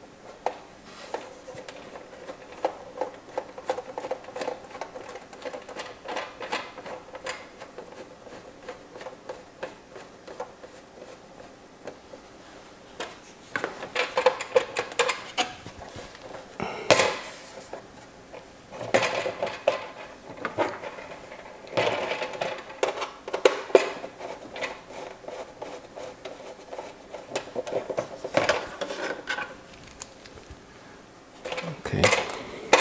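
Small hard clicks and clatter of hand assembly: a hand screwdriver turning small screws into a Tamiya Bruiser's plastic body, with metal tools and parts being picked up and set down. The clatter grows busier and louder around the middle, with a few sharp clicks.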